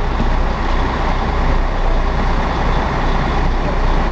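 Tour coach's engine idling, a loud steady rumble heard at its open front door.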